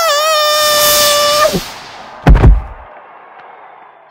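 A cartoon character's long scream, wavering at first and then held on one pitch, that cuts off about a second and a half in. It is followed by a loud thud of a body hitting the ground.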